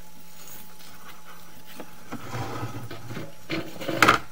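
A steady low electrical hum, then from about halfway a rough, irregular scraping and rumbling with several knocks, the loudest right at the end: a sewer inspection camera head being pushed along the inside of a drain pipe.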